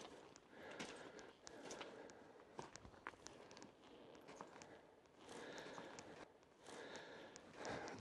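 Faint footsteps on rocky, gravelly ground: a few soft crunches and small stone clicks scattered through otherwise near-silent air.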